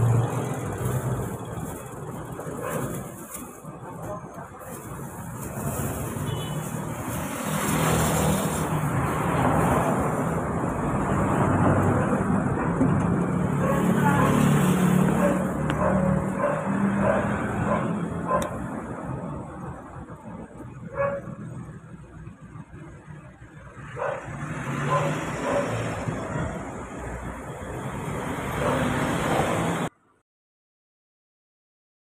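Street traffic: a motorcycle and a truck drive past close by, their engine rumble swelling through the middle and fading again.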